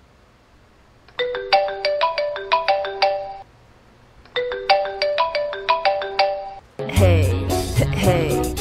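A mobile phone's alarm melody, a short run of quick pitched notes, plays twice with a brief pause between. About seven seconds in, loud music with a heavy bass beat starts and becomes the loudest sound.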